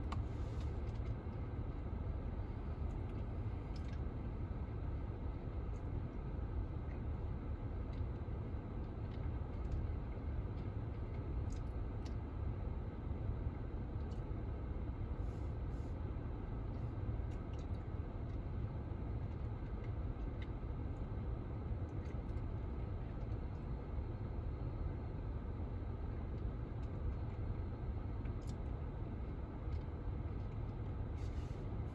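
Steady low rumble of a car idling, heard from inside its cabin, with a few faint small clicks.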